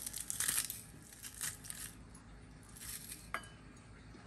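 Metal garlic press crushing garlic cloves into a bowl: a few short squeezing bursts in the first two seconds, then a sharp click a little past three seconds.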